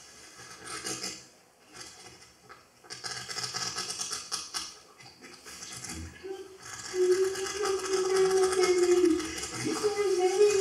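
A sheet of paper rubbed and crumpled right against a microphone, a dry rustling and scratching in fits and starts. About seven seconds in, a voice joins with a long held, slightly wavering note.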